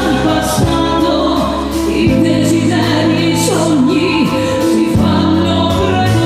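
Live dance-band music with a woman singing into a microphone, held bass notes and a steady drum beat under the melody.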